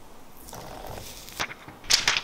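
Handling of a new smartphone and its box and case: a faint rustle, then a sharp click about one and a half seconds in and a louder click near the end.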